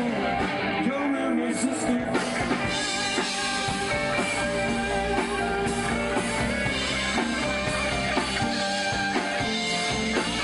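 Rock band playing, with electric guitar and drum kit.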